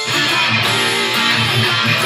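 Electric guitar playing a strummed rock part along with the song's backing track; the full, louder band section comes in suddenly at the start.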